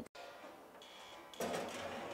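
Metal baking tray being slid into a countertop toaster oven, a faint scraping rattle starting about one and a half seconds in.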